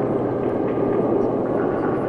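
Steady low rumbling drone with a faint hiss over it: the sound-designed underwater hum of a deep-sea bathyscaphe descending.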